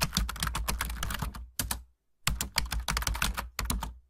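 A pen writing numbers on paper, close up: quick scratching and tapping strokes in runs, with a short pause about two seconds in and another near the end.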